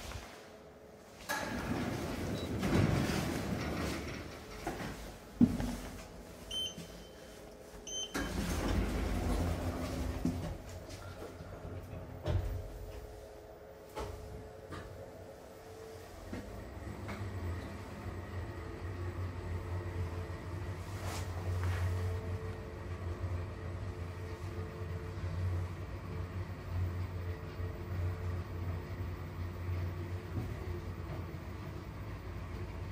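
Schindler 3300 elevator: sliding doors and a few knocks in the first half, with two short high beeps, then the car travels down with a steady low hum from its drive.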